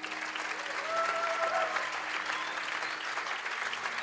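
Audience applauding at the close of a ballroom dance showcase.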